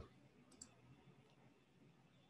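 Near silence: faint room tone with one faint computer mouse click about half a second in, as a colour is picked from an on-screen menu.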